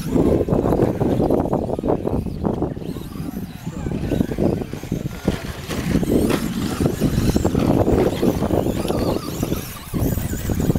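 Small electric radio-controlled off-road trucks racing over a dirt track, under indistinct voices of people close by, with a dense rumbling noise throughout.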